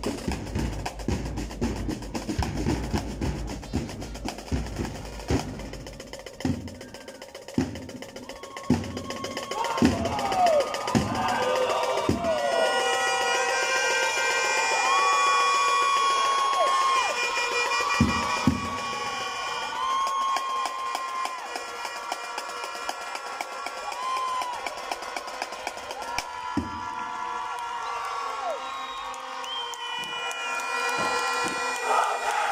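Marching percussion, snare and bass drum, beating steadily, then thinning to single heavy hits about a second apart. From about nine seconds in, a crowd's long drawn-out cheers and calls rise over the beats.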